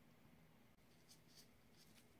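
Near silence: room tone with a few faint, short scratching sounds in the second half.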